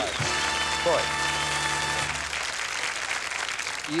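Studio audience applauding while a short game-show music cue of held chords plays for an automatic win; the music stops about two seconds in and the applause carries on.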